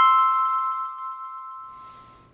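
The closing note of a short logo jingle: one bright, bell-like chime struck once, ringing out and fading away over about two seconds.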